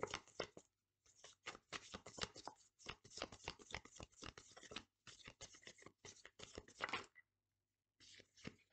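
A deck of tarot cards being shuffled by hand: a soft, rapid run of card flicks and riffles, with a brief pause about a second in, stopping about a second before the end.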